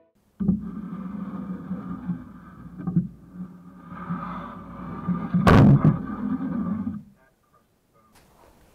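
Slowed-down slow-motion sound of large neodymium magnets snapping together on a chicken bone: a low, drawn-out sound, then one loud sharp crack about five and a half seconds in as the magnets slam shut, cutting off about a second and a half later.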